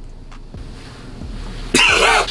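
A man bursting into laughter about three-quarters of the way in, after a pause holding only faint room sound.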